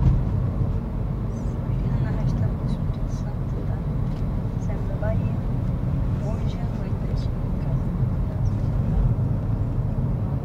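Steady low road and engine rumble heard inside the cabin of a Honda Civic cruising on the highway.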